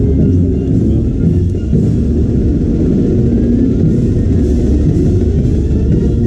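Marching band playing in a street parade, drums heavy under the brass, loud and dense without a break.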